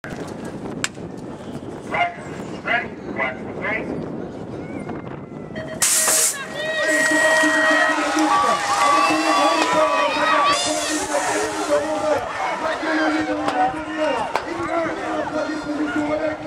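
A BMX start gate's electronic cadence: four short beeps about half a second apart as the gate drops. About two seconds later, spectators break into loud cheering and shouting that carries on as the riders race.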